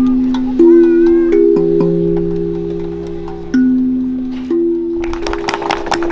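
Steel hand drum played slowly by hand: single low notes struck every second or so, each ringing on and overlapping the next. Hand clapping starts about five seconds in.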